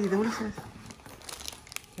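A clear plastic bag full of wrapped candies crinkling as it is handled, in scattered short rustles and crackles.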